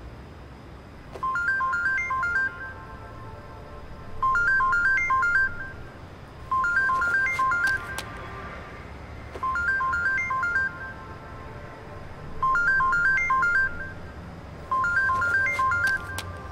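Mobile phone ringtone: a short electronic melody of quick beeping notes, repeated six times with brief gaps, the phone ringing for an incoming call.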